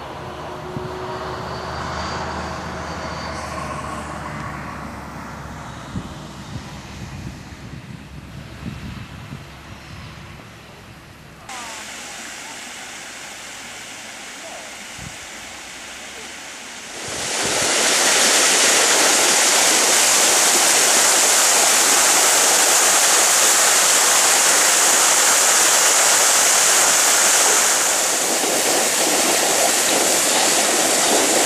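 Water spilling over a low stone weir on a stream: a loud, steady rush that sets in a little past halfway and holds to the end. Before it there is quieter outdoor sound with faint voices.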